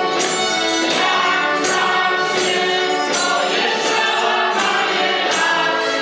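A folk ensemble singing a Polish carol (kolęda) in chorus, accompanied by accordion and violin, over a steady percussive beat.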